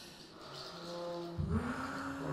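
Sparse free-improvised big-band music: soft held low notes, then a new low note enters with a sharp attack about one and a half seconds in and is sustained.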